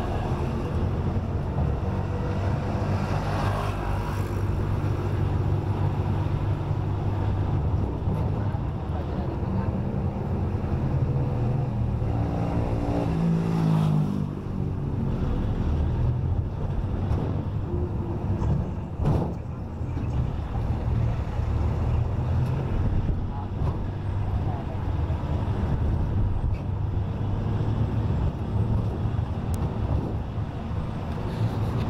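Vehicle engine and road noise from driving slowly through street traffic, a steady low drone. About halfway through, a nearby engine drops in pitch in steps, and a short knock comes a few seconds later.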